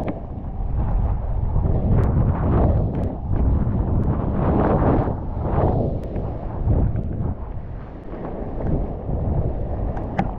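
Wind buffeting the microphone, over whitewater rushing and splashing alongside a surfboard riding a breaking wave.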